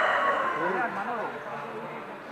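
The drawn-out last note of a rooster's crow, dropping slightly in pitch and dying away within the first second, over a background of several people talking.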